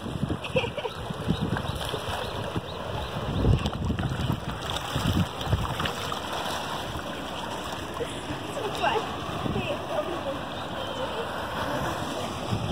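Trout splashing and thrashing at the surface as they go after thrown fish food, over the steady rush of spring water flowing through a concrete hatchery raceway.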